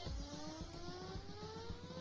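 Electric bike motor whining and rising steadily in pitch as it speeds up.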